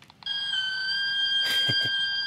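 Small portable cassette player playing a single steady test tone off its tape, high-pitched with a stack of overtones. It starts about a quarter second in, and its pitch nudges up slightly just after it begins.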